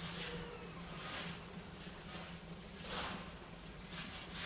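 Asian small-clawed otter digging and scratching in loose sand: a few separate scratchy rustles, roughly one a second, the loudest about three seconds in, over a steady low hum.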